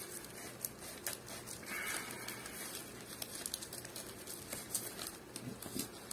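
Faint rustling and small clicks of a small package being opened by hand, with a brief crinkle of packaging about two seconds in.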